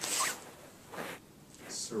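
A pause in a man's talk: a short rustling, breathy noise right at the start, a faint click about a second in, and his next word beginning with a hiss near the end.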